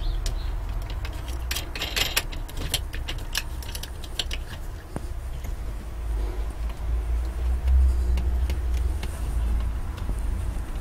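Light clicks and rattles of wooden knobs and their fixings being handled and fitted to a chipboard board, clustered in the first few seconds. Under it runs a low rumble that swells about six seconds in and fades near the end.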